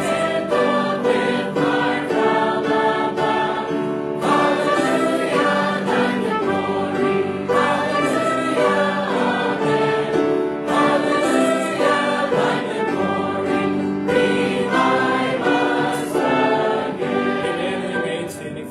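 Church choir and congregation singing a hymn together, in phrases a few seconds long. The final notes begin to fade at the very end.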